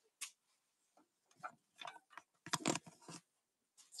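A few faint, scattered clicks and light knocks of handling in a small room, with a short cluster of slightly louder knocks about two and a half seconds in.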